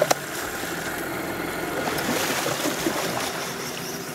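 Outboard motor running at idle under the rush of river water, with two sharp clicks at the very start. Through the second half a hooked king salmon splashes and thrashes at the surface beside the boat.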